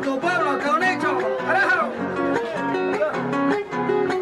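Live acoustic guitar plucking and strumming a Panamanian torrente, the melody played between the sung décima verses, with a wavering melodic line above it.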